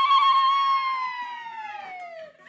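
A woman's long, high-pitched held cry of celebration, slowly falling in pitch and fading away.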